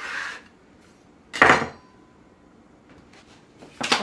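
Kitchen handling noises on a wooden counter: a short scrape about a second and a half in, a few faint clicks, and a sharp knock near the end, as a metal baking sheet is taken up.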